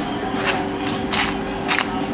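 Salt shaken from a shaker over a bowl of noodle salad: four short rasping shakes about half a second apart, over a faint steady hum.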